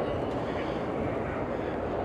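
Electric power-folding third-row seatback of a Lexus TX500h folding down slowly, its motor running quietly under a steady background hum of a busy exhibition hall.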